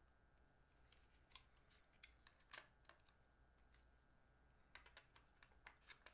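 Near silence with faint, irregular light clicks and taps from small hard objects being handled, clustered in a few short runs.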